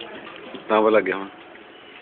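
A person's short voiced sound, about half a second long, a single held tone that dips slightly in pitch, over faint background murmur.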